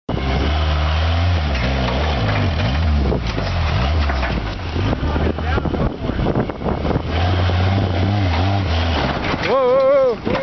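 Suzuki Samurai buggy's engine running under load as it crawls up a steep dirt ledge, with a strong low note that weakens in the middle and pulls hard again near the end as the front lifts. A shout comes right at the end.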